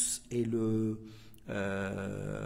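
A man's voice drawing out sounds at a nearly level pitch, twice, with a short break about a second in: held, hesitant vocal sounds in the middle of a spoken lesson.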